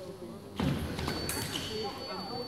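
Sabre exchange: a sudden burst of footwork and blade contact about half a second in, then the electric scoring apparatus sounds its steady high tone just after a second in as a touch registers.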